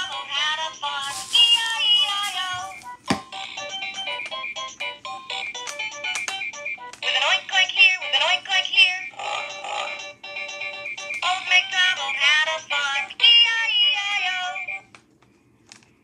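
VTech Rhyme and Discover Book's small electronic speaker playing a sung children's song with music, thin and tinny with no bass; it has just come on now that the batteries are in. The song stops shortly before the end, with one sharp click about three seconds in.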